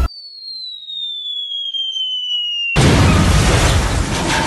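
Falling-bomb whistle sound effect: a single clean tone gliding steadily down for over two seconds. It is cut off by a sudden loud explosion that carries on as a noisy blast.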